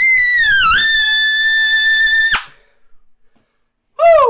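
Custom Olds Ambassador trumpet holding a loud, high final note in the upper register. The note sags in pitch and comes back up about half a second in, then holds steady and cuts off about two and a half seconds in.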